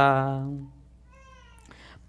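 A man's chanted note, held steady and fading out over the first second. About a second in comes a faint, short, high-pitched call.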